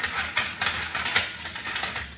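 Ice cubes clattering as they are taken out by hand: a quick, irregular run of sharp clicks and rattles.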